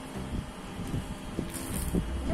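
Plastic toy scoop scraping and pouring dry sand in short bursts, with a brief hiss of sand about one and a half seconds in, over a faint low hum.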